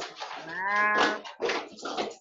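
Stray sound from a participant's open microphone on a video call: one drawn-out, voice-like call that rises and then falls in pitch, lasting about half a second, amid scratchy background noise.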